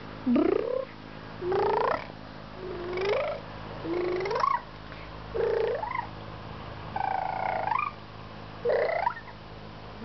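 A toddler crying out "ai" over and over: about seven short calls, each sliding up and down in pitch, roughly one a second.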